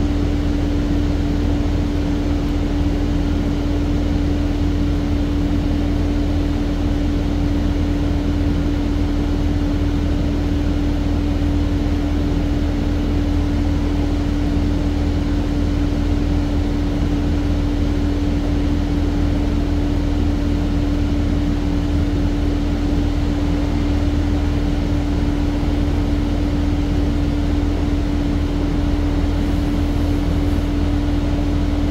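2008 New Flyer C40LFR transit bus heard from inside the passenger cabin: a steady engine and drivetrain drone with a constant hum, unchanging in pitch and level.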